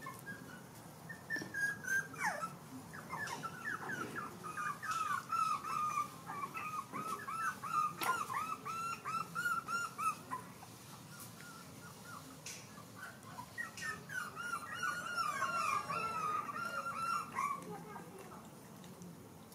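Young puppies whimpering and whining in quick, high-pitched cries, several a second, in one long run and then, after a short lull, a second run near the end.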